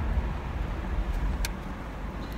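Car driving, heard inside the cabin: a steady low rumble of engine and road noise, with a single short click about one and a half seconds in.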